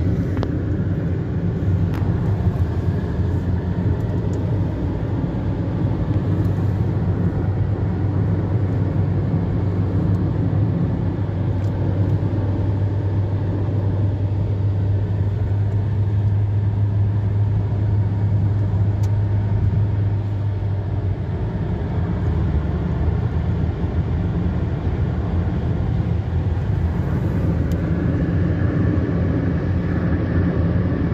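Steady engine and tyre drone heard from inside a car moving at highway speed. A low hum runs under it and fades about two-thirds of the way through.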